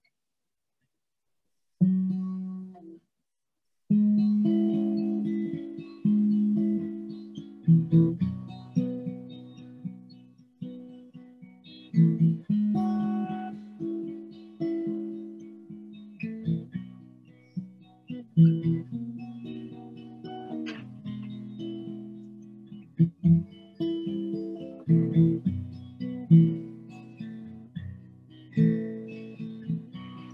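Guitar being strummed as the instrumental introduction to a song: a single chord about two seconds in, then steady rhythmic strumming of chords.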